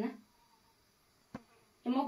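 A woman's speech trailing off and resuming near the end, with a near-silent gap between them broken once by a short, sharp click.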